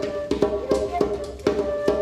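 Djembe played by hand in a steady pattern, about two or three strokes a second, under a flute holding long steady notes.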